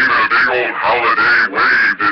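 A person's voice talking loudly and without pause; the words are not made out.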